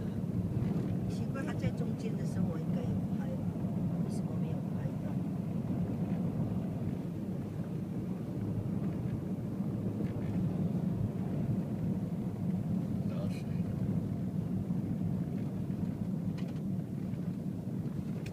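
Steady road and engine noise of a moving car heard from inside the cabin, a low even rumble.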